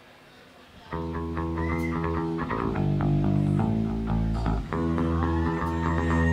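Solo electric bass guitar, amplified, coming in about a second in with a riff of held low notes that step between pitches.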